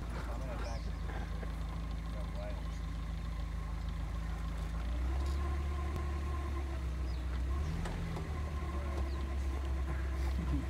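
Vehicle engine idling steadily, its note shifting about halfway through and again near the end.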